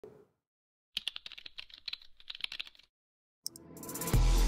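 Computer-keyboard typing: a quick run of key clicks lasting about two seconds, with a rising swell beginning near the end.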